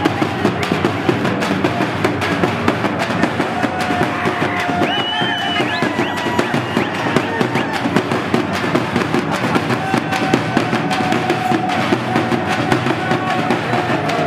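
Several large frame drums beaten with sticks in a fast, dense, unbroken rhythm, loud throughout, with crowd voices calling over the drumming.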